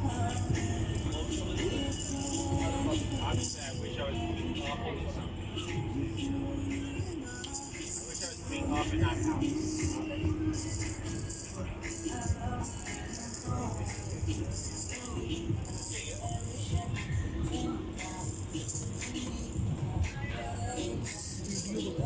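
A baby's handheld plastic rattle toy being shaken in irregular short bursts, over background music and people talking.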